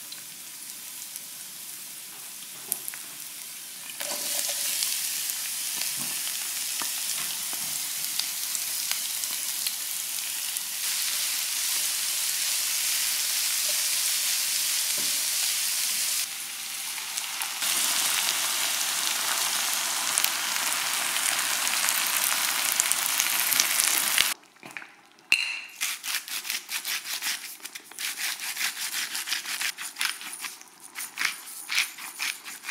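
Chopped garlic and onion sizzling in oil in a frying pan while being stirred with a spatula; the sizzle starts about four seconds in. Near the end it stops suddenly and gives way to a run of sharp clicks and scrapes.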